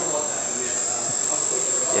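Steady industrial machinery noise with a constant high-pitched whine, from the equipment around an oil-filled processing tank; a short laugh near the end.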